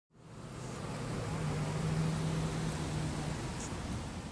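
Steady outdoor background noise like distant road traffic, fading in just after the start, with a low steady hum through the middle.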